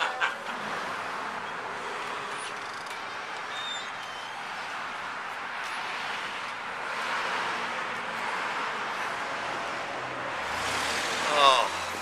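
Steady background noise with no distinct event in it. A short laugh comes right at the start, and a man's voice speaks briefly near the end.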